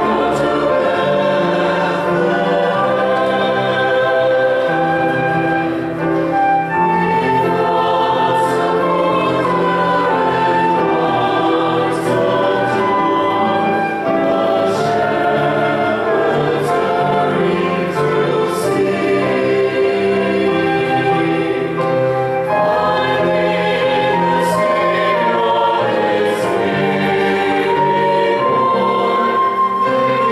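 Mixed church choir singing a hymn-like anthem with piano and flute accompaniment.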